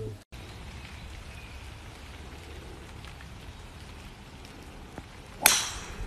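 Steady outdoor background hiss with no speech, then a single sharp, loud crack near the end.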